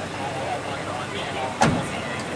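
Street background at a roadside police stop: faint, distant voices over a low traffic hum, with one sharp knock about a second and a half in.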